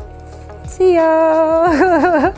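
A woman's voice without words, holding one long sung note that wavers in pitch near the end, over soft background music.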